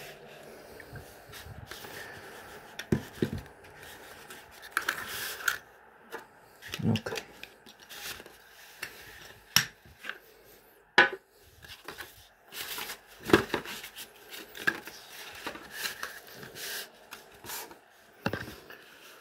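A cardboard perfume box and its folded cardboard insert being handled: irregular rustling, sliding and scraping, with a few sharper knocks and clicks scattered through it.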